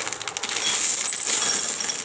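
Hard sugar-coated candy eggs (dragées) pouring from a bag into a small glass bowl: a dense, continuous clatter of tiny clicks as they hit the glass and each other.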